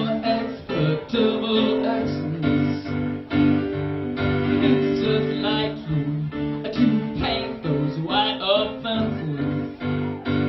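Live band playing a rock song on guitar and keyboard, with singing that is clearest near the end.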